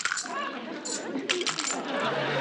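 Spurs jingling with a man's walking steps: a run of irregular metallic clinks, thickest about a second and a half in.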